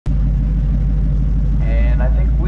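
Ford Mustang GT350's V8 idling steadily and loudly, heard close up from a mount on the car.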